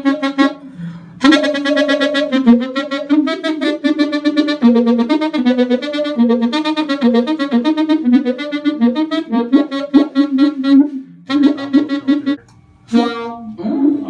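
Alto saxophone played through guitar effects pedals, an envelope filter among them, in a fast, winding line of notes with a few short breaks.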